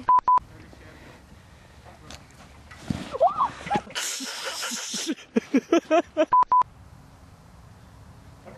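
Censor bleep: a steady 1 kHz test tone sounded as two short beeps at the start and two more about six seconds in, covering swearing in the censored cut.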